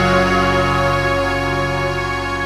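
Soft background music: a sustained chord held without a beat, slowly fading.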